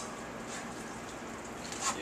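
Cooked tomato sauce being poured from a saucepan into a chinois: a faint, steady noise without distinct knocks.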